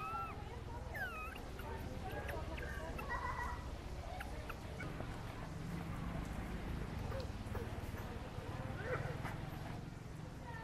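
Macaque calls: a few short, high, gliding squeaks and whimpers, heard near the start, about a second in, around three seconds and again near the end, over a steady low rumble.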